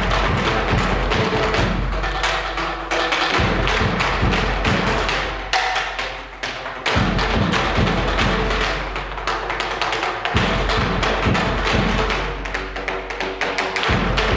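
Live percussion ensemble playing a busy passage of quick, overlapping strikes with some sustained pitched notes underneath; the playing eases briefly about halfway through, then comes back in full.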